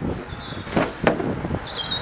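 A car's rear door being opened by hand: a few clicks and clunks from the handle and latch, with thin high-pitched squeaks over them from about halfway through.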